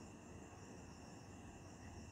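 Near silence: only a faint, steady, high-pitched background noise.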